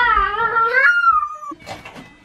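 A pet animal's long, wavering cry lasting about a second and a half, ending in a thin falling whine.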